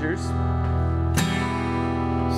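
Steel-string acoustic guitar strumming an E minor chord that rings on, with one fresh strum a little over a second in.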